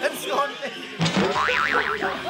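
A cartoon spring "boing" sound effect, starting suddenly about halfway through: a high tone that wobbles rapidly up and down.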